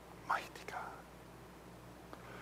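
A person whispering briefly and breathily, about a quarter second in, lasting about half a second, over a low steady hum.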